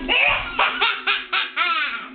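A young child laughing hard in a string of about five quick, high-pitched bursts.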